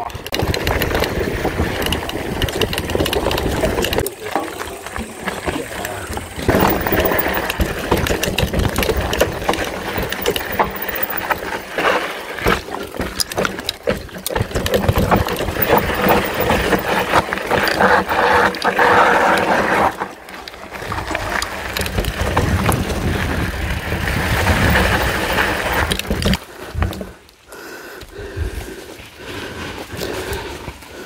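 Wind buffeting the camera's microphone, with a mountain bike rattling and its tyres crunching over a rough dirt trail on a fast descent. It drops off near the end as the bike slows.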